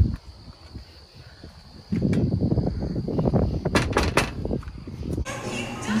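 Rough rustling and thumping phone-microphone handling noise with a quick run of four sharp knocks on a house door about four seconds in. A little after five seconds it cuts off abruptly to room sound with a TV playing music.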